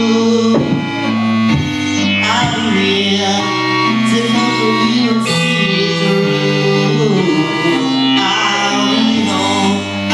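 Live music led by an electric keyboard playing held chords over a low bass line, the chords changing every second or two.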